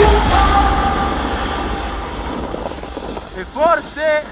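Background music ends right at the start, leaving a rushing wind-and-snow noise from riding down the slope that steadily fades. Near the end a person gives two short vocal cries, about half a second apart, as the snowboarder falls.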